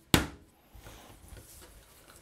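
A single sharp thump just after the start as a rolled log of layered dough is knocked down against the kitchen countertop, tamped to press out air trapped between the layers, then only faint handling of the dough.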